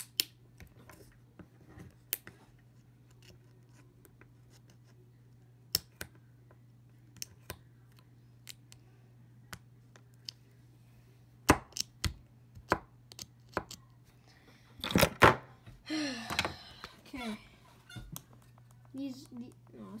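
Scattered sharp clicks and snips of hands cutting and tearing at a small speaker, over a steady low hum, with a louder clatter about fifteen seconds in. A chair squeaks shortly after the clatter.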